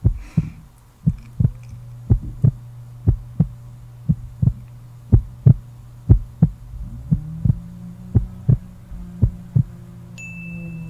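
A heartbeat-like pulse, a low double thump about once a second, over a steady low hum. A second low tone joins about seven seconds in.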